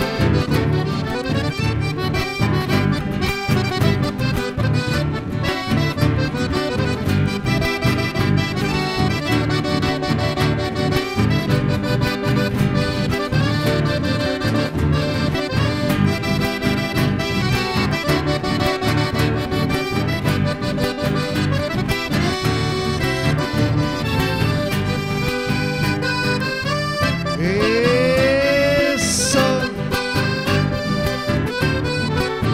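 Chamamé played live by accordion, two acoustic guitars and bass guitar, with the accordion leading an instrumental passage over a steady rhythm. Near the end a long, high shout rises and falls over the music: a sapucai, the traditional chamamé cry.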